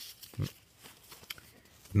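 Trading cards being handled and slid past one another, with faint light clicks. About half a second in there is a short, low vocal grunt.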